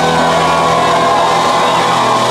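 Rock band's electric guitars and bass holding a loud, distorted chord that rings on steadily, with a few sliding tones over it.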